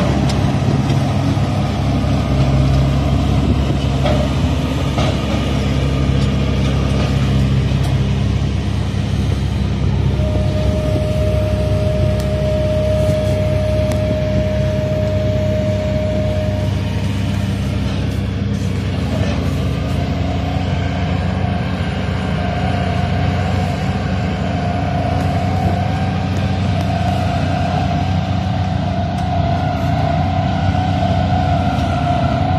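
Heavy piling machinery running with a steady low drone, a held higher tone joining for several seconds in the middle and another near the end.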